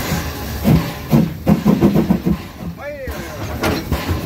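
People's voices talking close by, over the steady low rumble of a standing narrow-gauge steam locomotive, with a few sharp knocks. About three seconds in there is a brief rising-and-falling pitched call.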